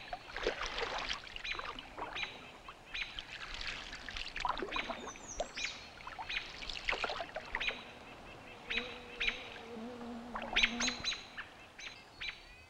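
Birds calling with short chirps about once a second, over soft water swishes from canoe paddle strokes. A lower, drawn-out call comes in near the end.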